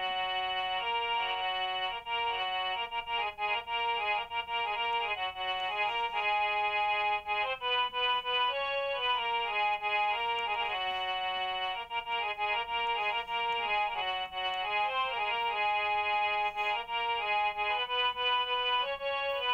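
A smartphone harmonium app playing a single-note melody in a sustained, reedy organ-like tone, the notes stepping up and down several times a second: the antara (verse section) of a Hindi film song played on the on-screen keys.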